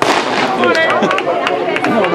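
A single starting-gun shot fired to start a 400 m race: one sharp crack right at the start with a brief echoing tail, over spectators' voices.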